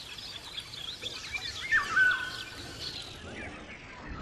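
Several songbirds singing and chirping together, with overlapping calls and a loud, clear whistled phrase about two seconds in.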